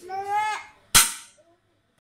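A high voice, probably a child's, calls out briefly, then a single sharp bang or knock about a second in, the loudest sound, which dies away within half a second.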